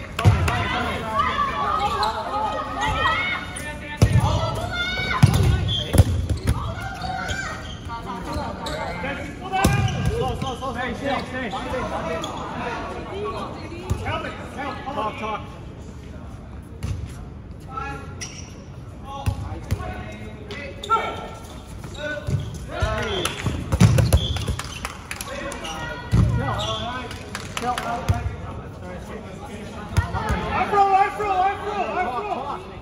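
Dodgeballs striking the floor and players during a game: a handful of sharp thuds, the loudest clustered a few seconds in and again about three quarters of the way through, under players' shouts and chatter.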